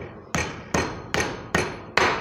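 A hammer tapping a hydraulic vane pump's cartridge kit down into its housing to seat it. There are five evenly spaced strikes, about two and a half a second, each ringing briefly, the last near the end.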